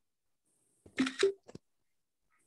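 Camera shutter sound from a computer taking a screenshot photo: one short snap about a second in, followed by a small click.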